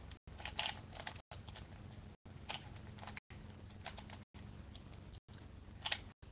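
A plastic 3x3 puzzle cube being turned by hand, its layers clicking in quick, irregular bursts, the loudest near the end. The audio drops out for an instant about once a second.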